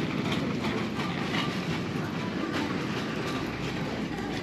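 Clothes and plastic hangers rustling and clicking against a metal store rack, with many short clicks over a steady bed of store background noise.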